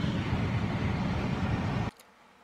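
Steady road and engine noise inside a Jeep's cabin while driving, which cuts off abruptly just before the end.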